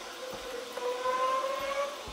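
A drawn-out squeak that rises slightly in pitch over about a second and a half: a thin wooden link of a worm-robot kit rubbing as it is pressed onto a plastic pulley pin.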